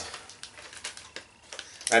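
Plastic snack bag crinkling as it is handled: a scatter of short crackles, with a sharper crackle just before speech starts near the end.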